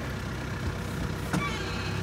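Small truck's engine running steadily at low speed, heard as a low hum from inside the cab.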